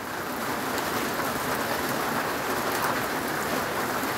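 Steady typhoon rain falling on a corrugated metal roof overhead, an even hiss that holds at one level throughout.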